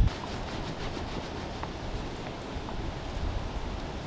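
Quiet outdoor background: a steady low rumble with a few faint clicks.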